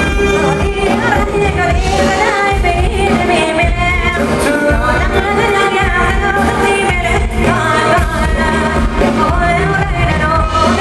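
Thai ramwong dance music played by a band, with a vocalist singing over the steady accompaniment.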